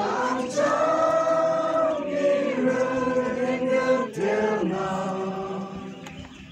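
A mixed group of young men and women singing a Christian worship song together, drawing out long held notes, with the singing dropping away near the end.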